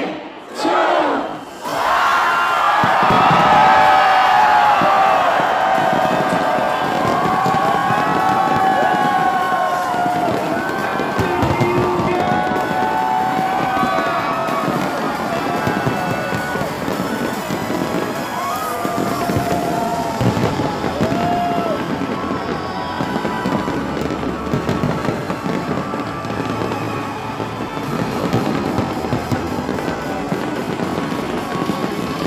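A large aerial fireworks display going off in repeated booms and crackles, over a crowd cheering and screaming. The crowd shouts twice at the start, then the sound becomes continuous and stays loud throughout.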